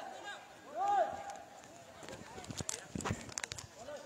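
Two drawn-out shouts, each rising then falling in pitch, one at the start and one about a second in, followed by a run of irregular short knocks or taps in the second half.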